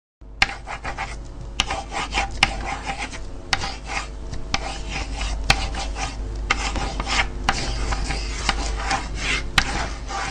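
Old-film sound effect: scratchy crackle with irregular sharp clicks over a steady low hum, laid under a countdown leader.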